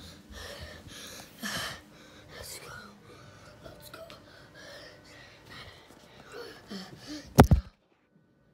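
A person breathing hard and gasping while climbing stairs, roughly one breath a second, with rustling from the phone being handled. Near the end there is a loud double bump, then the sound cuts off.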